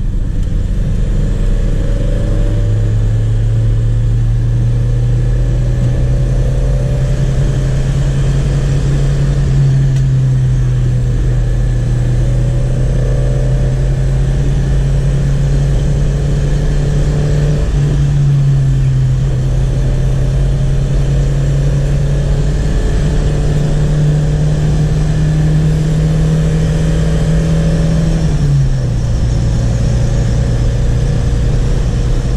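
Chevrolet Chevette 1.6 four-cylinder engine pulling the car along, heard from inside the cabin. Its note climbs slowly, dips briefly about two-thirds of the way through, and falls away near the end.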